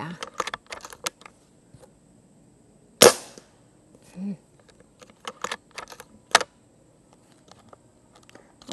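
A single shot from an Umarex Komplete NCR .22 nitrogen-cartridge air rifle about three seconds in: one sharp crack with a short decay. Smaller metallic clicks come before and after it as the rifle's action is worked to cock and load the next pellet.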